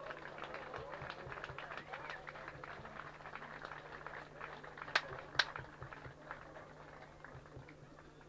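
Crowd applauding with dense clapping that thins out over the last few seconds, with two loud sharp claps close to the microphone about five seconds in.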